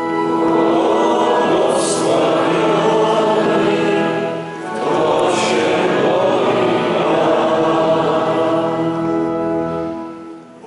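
Church choir singing a psalm in two phrases, with a short break just before halfway. Long steady organ-like tones sound under the voices.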